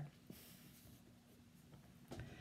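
Near silence: room tone, with a faint rustle about half a second in.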